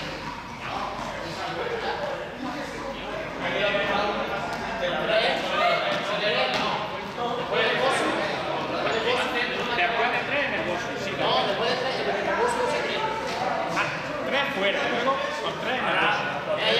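Indistinct chatter of several voices, echoing in a large sports hall, with a few sharp knocks.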